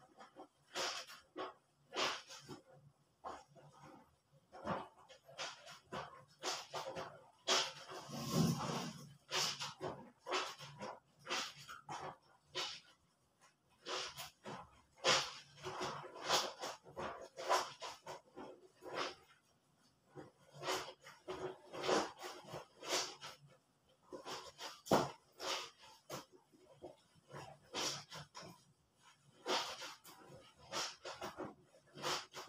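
Soapy clothes being scrubbed and squeezed by hand in a plastic basin of water: repeated wet squelching and sloshing strokes, irregular, about one every half second, with a longer slosh about eight seconds in.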